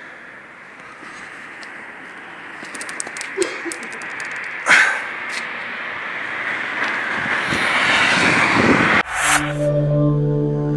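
Outdoor street noise picked up by a handheld phone, growing louder over several seconds, with a few small clicks and one sharp knock near the middle. About nine seconds in it cuts abruptly to a short synthesized music jingle of sustained tones.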